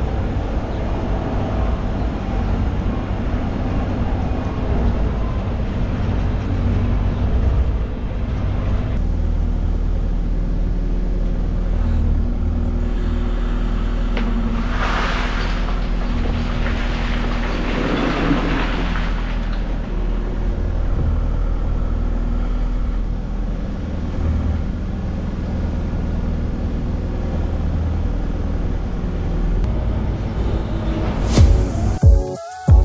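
Diesel engine of a loader running steadily, heard from the machine. About halfway through, a rushing, rattling spell of about five seconds as a bucketful of crushed concrete is tipped out.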